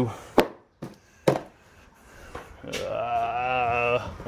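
Two sharp knocks about a second apart, then a man's long, steady hum held for over a second near the end.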